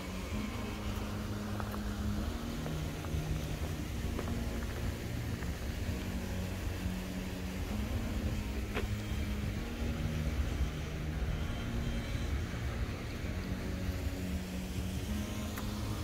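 Steady low rumble of road traffic, with a faint low hum that shifts between two pitches and a single click about nine seconds in.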